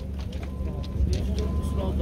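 A steady low rumble with faint background voices, and a thin high tone in the middle.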